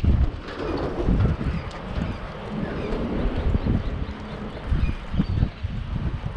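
Wind buffeting the microphone in irregular gusts, with the steps of someone walking on a paved path.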